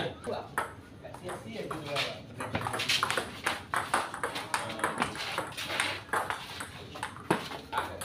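Table tennis rally: the ball clicking sharply off the bats and the table in a quick run of hits.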